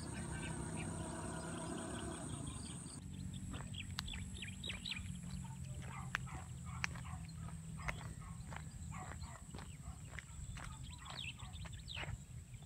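Birds chirping in many short, quick calls, thickest from about three seconds in, over a steady high thin hum and a low rumble.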